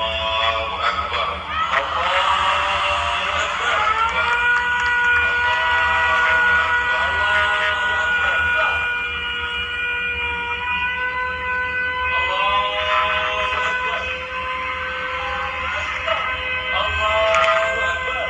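An electric siren sounding for a ceremonial launch: it winds up in pitch, holds one steady wail for several seconds and winds up again about twelve seconds in. Several sharp cracks of fireworks come near the end.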